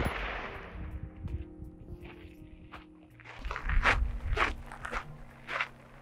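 The echo of a 5.56 rifle shot fading over the first second, then a series of short footsteps on gravel in the second half.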